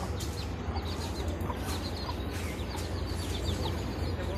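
Small birds chirping over and over in short, quick calls that fall in pitch, over a steady low rumble.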